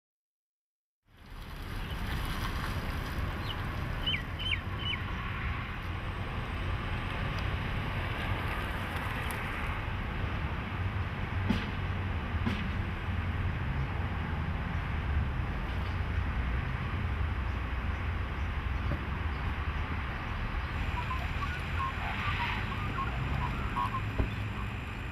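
Steady outdoor background noise, a low rumble with hiss over it, with a few brief bird chirps about four seconds in and again near the end, and two sharp clicks around the middle.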